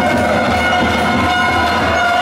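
Steady, sustained horn-like tones, several pitches held together, over the general noise of an indoor sports crowd.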